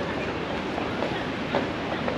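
Footsteps on brick paving at a walking pace, about two a second, over a steady outdoor background noise.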